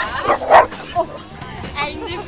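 A dog barking: a sharp bark about half a second in and a shorter one about a second in, then high wavering whining near the end.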